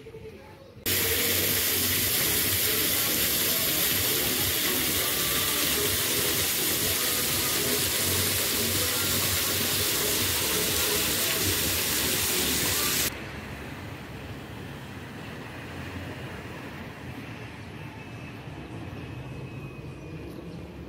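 Ground-level plaza fountain: water jets shooting up and splashing back onto wet paving, a loud steady hiss. It starts abruptly about a second in and cuts off just as abruptly well before the end, leaving a much quieter outdoor background.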